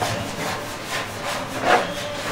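Dry rubbing and scraping as a metal tray of floured sugar-candy pieces is handled and the pieces are brushed over by hand, in a series of strokes with one louder stroke near the end.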